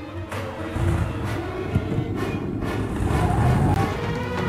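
Engine of an early Ford Bronco revving as it pulls away, a low rumble that starts about a second in and builds toward the end, with film score music over it.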